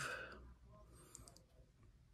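Near silence with a few faint, brief clicks about a second in, after a spoken word trails off.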